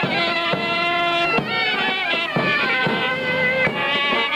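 Live Greek folk dance music led by a loud reed wind instrument playing an ornamented melody, with a few sharp beats under it.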